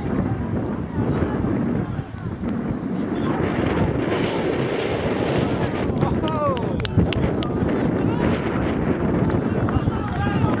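Wind buffeting the camera microphone with a steady rumble, over distant shouting from players on an open football pitch. The shouts are loudest about six to seven seconds in, around a goalmouth scramble, with a few sharp knocks.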